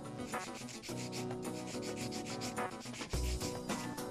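Hand-held nail file rubbing back and forth across the side of a sculpted acrylic nail in quick, rapid strokes.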